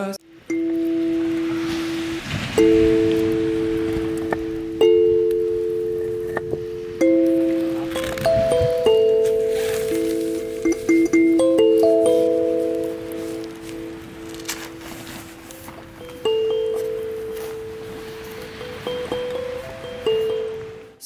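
Harmonica played by a campfire: slow held chords of two or three notes, each new chord starting sharply and fading away, with crackles in the background.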